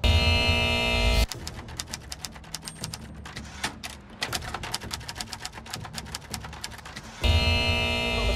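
A short musical sting, then about six seconds of rapid, irregular typewriter key clacking, then another musical sting near the end.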